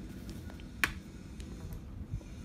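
Smartphones being handled and set down: one sharp click a little under a second in, with a few faint ticks around it.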